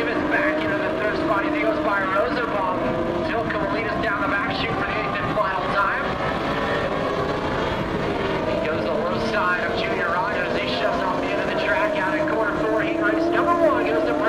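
Several dwarf car motorcycle engines running together at race speed, a steady multi-engine drone whose pitches slowly rise and fall as the cars circle.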